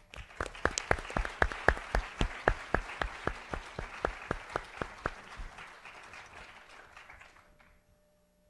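Audience applause, with one person clapping close to the microphone: loud, even claps about three or four a second over the first five seconds, over the applause of the room. The applause dies away shortly before the end.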